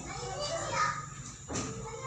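Background chatter of children and adults in a room, with one short sharp click about one and a half seconds in.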